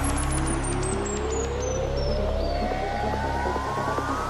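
Progressive psytrance: a synth riser climbing steadily in pitch over held bass, the build-up sweep of a breakdown, with a falling cascade of short high blips in the first couple of seconds.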